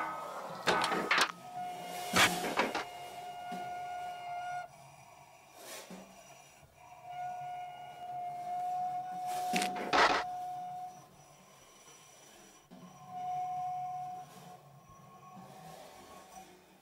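Sparse free-improvised percussion on snare drum, drums and cymbals: a handful of sharp strikes and scrapes, mostly in the first three seconds and again around the tenth. Under them a steady pitched tone is held for a few seconds at a time, three times.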